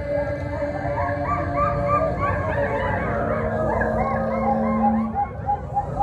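Choir voices making many overlapping short rising-and-falling calls in imitation of animal cries, over a sustained chord and a held low note.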